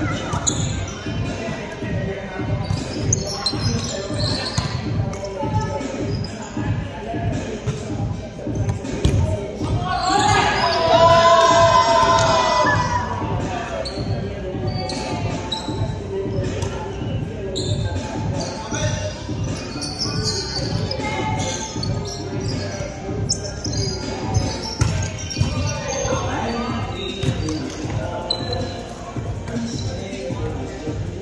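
Volleyball play in a large echoing gym: the ball being struck and bouncing on the hardwood court, with players' voices throughout. A louder burst of voices comes about ten seconds in.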